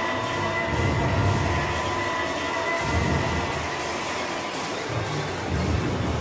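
Trailer score music: a sustained, noisy drone with faint high held tones and low rumbling swells that come and go.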